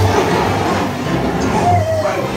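Dark-ride soundtrack of gusting wind effects mixed with music, over a low pulsing rumble.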